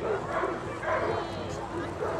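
A dog whimpering and yipping, with indistinct voices in the background.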